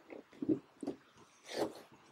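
Hands rubbing and pressing a vinyl sticker onto a plastic go-kart side pod: a few short, irregular rubbing sounds, the longest about one and a half seconds in.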